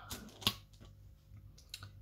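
A few small clicks and taps from hands handling fabric and craft tools on a work table, with one sharper click about half a second in.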